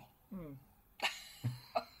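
A person's short non-speech vocal sounds over a call: a brief falling voiced sound, then sharp breathy bursts about a second in and again near the end, cough- or laugh-like.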